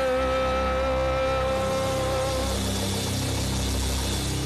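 Worship band holding the closing chord of a song: a long held note ends about two and a half seconds in, while sustained low keyboard and bass tones ring on.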